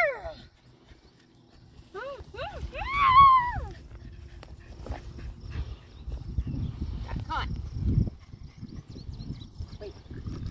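A corgi puppy giving a quick run of about five short, high yips that rise and fall in pitch, two to three seconds in. A low rumbling noise with scattered clicks fills the second half.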